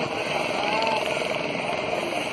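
Indistinct voices of people talking faintly over a steady rushing background noise.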